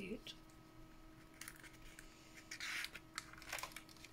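Pages of a pad of die-cut paper sheets being turned over by hand: a few short paper rustles and swishes, the longest and loudest a little over halfway through.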